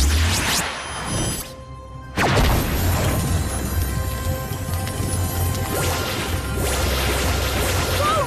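Cartoon magic-spell sound effects over music: a loud whooshing burst, a short lull, then a sudden blast just after two seconds in that carries on as a steady rushing beam with a deep rumble underneath.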